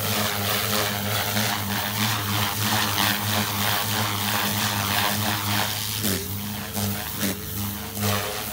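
Protos 380 electric RC helicopter flying aerobatics: a steady rotor and motor hum with the blades swishing in repeated waves as it manoeuvres, and the pitch dipping briefly about six seconds in.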